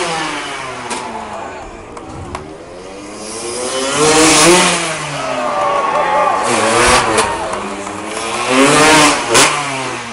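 Motocross bike engines revving up and dropping away again and again as freestyle riders launch off a ramp and fly through the air. The revs are loudest about four seconds in and again about nine seconds in.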